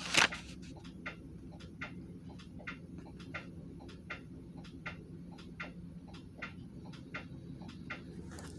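Steady, regular mechanical ticking, about three ticks a second, over a low steady hum, with one sharp louder click just at the start.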